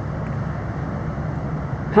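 Steady background noise of road traffic.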